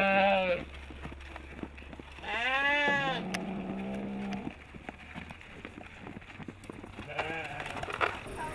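Sheep bleating: one call ending about half a second in, then a second loud bleat about two seconds in that trails off, with faint clicking sounds in the quieter stretch after.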